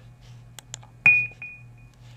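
A few faint clicks, then about a second in a single sharp clink that rings on at one high pitch and fades away within about a second.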